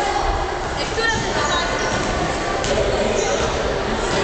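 Gymnasium hubbub: indistinct chatter echoing around the hall, with basketballs bouncing on the wooden court floor.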